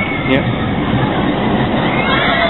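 Arrow/Vekoma suspended roller coaster train rolling along its track through the tunnel: a loud, steady rumble of wheels on rail, with faint high screech-like glides over it.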